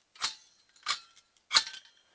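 Three sharp metallic clinks, a little over half a second apart, each with a short ring: metal parts of a microwave-oven magnetron knocking together as it is pulled apart by hand.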